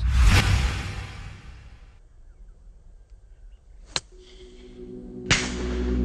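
A loud whooshing swell that fades over about two seconds, a sharp click about four seconds in, then the crisp strike of a golf iron on the ball near the end, with music starting under it.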